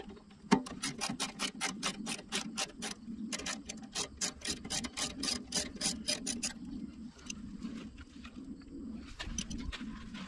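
A socket ratchet on an extension clicking fast and evenly, about six clicks a second, as a 12 mm bolt is backed out; the clicking stops about six and a half seconds in, with a few more clicks near the end.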